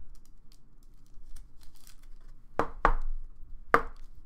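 A trading card being slid into a rigid clear plastic top loader and handled: faint light ticks, then three sharp plastic clicks, two in quick succession past the middle and one near the end.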